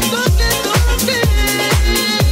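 Nu-disco house music: a steady four-on-the-floor kick drum, about two beats a second, under sustained synth chords and short gliding melodic notes.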